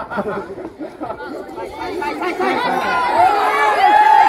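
A crowd of schoolchildren chattering and calling out over one another, growing louder near the end.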